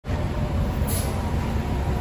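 MCI J4500 motor coach's diesel engine running with a steady low rumble. There is a brief hiss about a second in.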